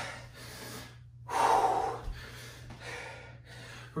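A man breathing hard through the mouth from the exertion of bodyweight squats: a series of heavy, noisy breaths, the loudest about a second and a half in.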